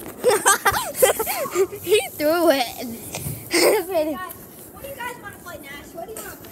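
Children's voices calling out and chattering while they play, with no clear words; one voice wavers up and down about two seconds in.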